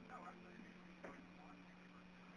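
Near silence on a telephone line: a faint steady low hum, with a couple of very faint brief sounds.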